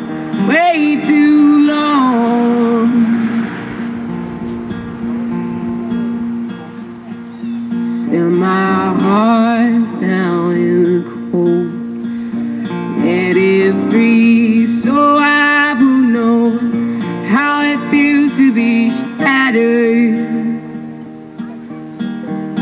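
A man singing a slow song over his own strummed acoustic guitar, with long held vocal notes that waver in pitch between guitar passages.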